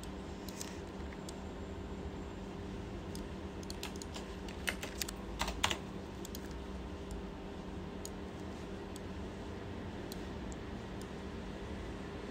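Light, scattered clicks of a computer keyboard and mouse, with a quick cluster of louder taps about five seconds in, over a steady low electrical hum.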